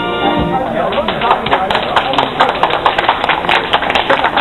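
A police concert band's closing chord, held, cuts off about half a second in. Audience clapping follows and goes on to the end.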